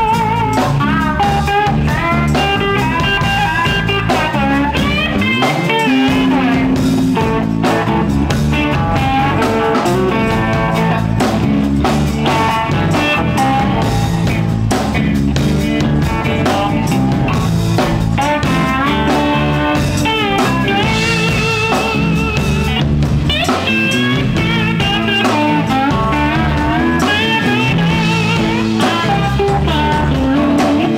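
Live blues-rock band playing an instrumental passage: electric guitar, electric bass and drum kit, with a wavering lead line from a blues harmonica cupped to the microphone. Loud and continuous.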